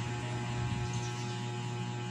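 Steady electrical mains hum: one low, unchanging tone with a few higher overtones over a faint hiss.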